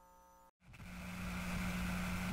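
A faint, steady low hum over a hiss. It starts after a brief dropout about half a second in and slowly grows louder.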